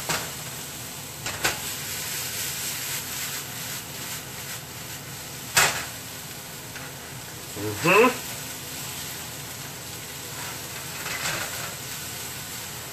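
Farro and vegetables sizzling in a hot frying pan as they are sautéed and stirred with a wooden spatula, with a few sharp taps of the spatula against the pan.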